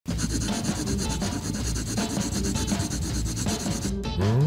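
Steady scratchy rubbing of a marker pen being drawn across skin, a loud, edited-in drawing sound.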